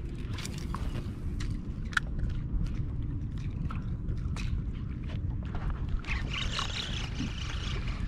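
Water lapping against a kayak hull over a steady low rumble, with scattered small ticks and splashes and a short hiss of water about six seconds in.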